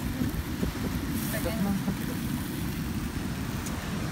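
Wind rumbling steadily on the phone's microphone outdoors, with a faint voice briefly about a second in.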